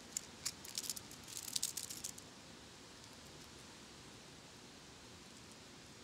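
A quick run of light metallic clicks and rattles over the first two seconds as a freshly degreased tapered roller bearing is turned over in the fingers, then only faint room tone.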